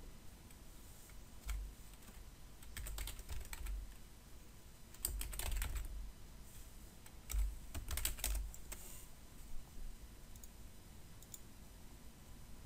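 Computer keyboard typing in several short bursts of keystrokes, with pauses in between.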